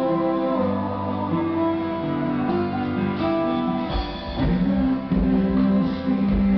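Acoustic guitars played live in an instrumental passage of a worship song, with no singing. About four seconds in, low beats join under the guitars.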